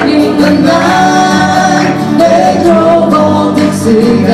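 Live acoustic folk band: several voices singing together in harmony, with long held notes, over strummed acoustic guitars.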